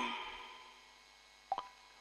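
Quiet pause with one short, sharp click about one and a half seconds in.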